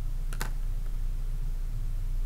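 Two quick, sharp clicks close together about half a second in, over a steady low hum.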